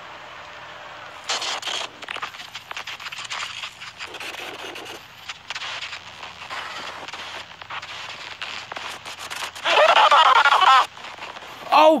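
VHS tape playback of an old-style cartoon soundtrack: a steady hiss, then from about a second in a crackling sound with scattered clicks and pops. About ten seconds in, a loud wavering voice-like cry lasts about a second.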